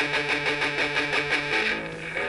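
Electric guitar, a Stratocaster-style instrument, picking a single note on the fifth string at the fifth fret in fast, even down-up pick strokes. The strokes stop about a second and a half in and a lower held note rings on.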